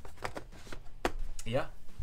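Cardboard game board being handled and laid into a board game box: a quick run of light taps and knocks, the sharpest about a second in.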